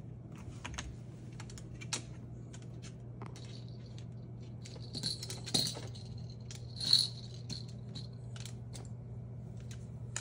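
Moluccan cockatoo's claws and beak clicking and scraping on a wooden perch, a wooden floor and toys: a string of small irregular clicks, with two louder scrapes about halfway through.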